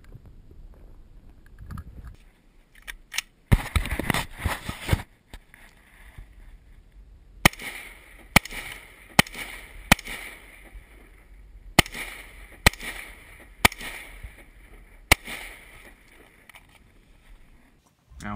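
A series of sharp cracks: a tight cluster about three to five seconds in, then single cracks about a second apart, each with a short ringing tail.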